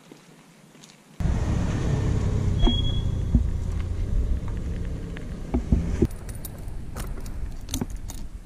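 Keys jangling on a key ring as the ignition key of an off-road motorcycle is handled, with clicks from the fuel tap and switch being worked. A steady low rumble starts suddenly about a second in, under the clicks; the engine has not started yet.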